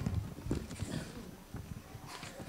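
Quiet handling noise close to a handheld microphone: soft, irregular knocks and a brief rustle of a paper letter being handled.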